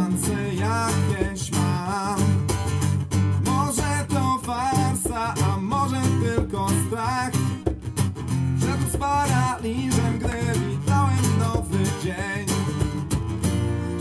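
Acoustic guitar strummed steadily in a live song, with a voice carrying a melody with vibrato over it but no clear words.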